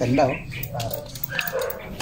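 A dog barking a few short times, with indistinct voices.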